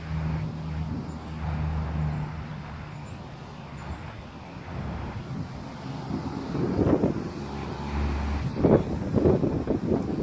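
Gusty wind buffeting the phone's microphone in irregular bursts, starting about six and a half seconds in and loudest near the end. Under it, a low steady engine hum that is plain in the first couple of seconds and fades, returning briefly later.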